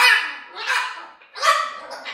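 White parrot giving short, harsh, bark-like calls, three in two seconds, the loudest at the start: an angry, agitated bird.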